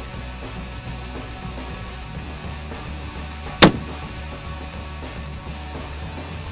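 A single heavy-calibre extreme-long-range rifle shot, one sharp loud report about three and a half seconds in, over background music.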